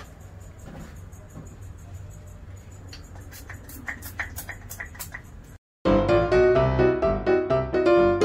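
Quiet handling sounds, a few faint clicks and rubbing, as a plastic sunscreen bottle is used and lotion is spread on skin. Near the end the sound cuts out for an instant and piano music starts, louder than anything before it.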